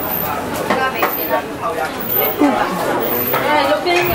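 Crowd chatter: many voices talking at once in a busy indoor public space.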